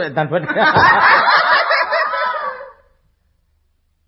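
Several people laughing together in one dense burst that dies away about three seconds in.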